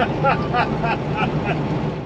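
A man laughing, a run of short 'ha' sounds about four a second, over the steady low rumble of a Peterbilt 389 truck cab.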